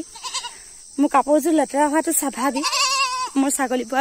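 A goat bleating once, a short quavering call about three seconds in.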